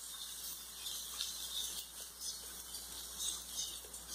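Faint sizzling and light crackling from a batter-coated bread slice frying in a little oil on a hot tawa, with a few small irregular pops.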